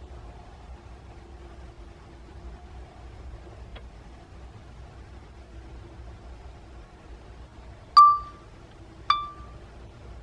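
Faint steady hum, then about eight seconds in a short ringing electronic chime from the DJI flight app on the phone as video recording starts, followed a second later by a second chime of a slightly different tone.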